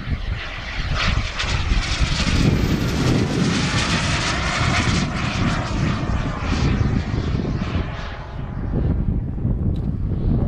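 Turbine-powered RC jet (King Cat) making a fast pass: a jet whoosh and whine builds, is loudest through the middle, and fades near the end, its tone dropping in pitch as it goes by.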